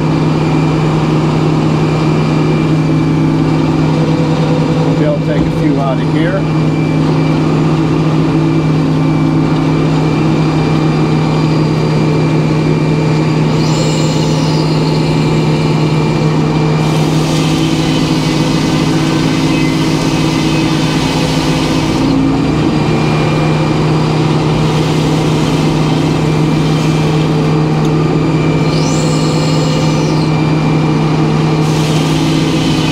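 Circular sawmill running, its large blade cutting lengthwise through a big white pine log over a steady engine hum. The cut gets a louder hiss past the middle, and there are two brief whines, one about halfway and one near the end.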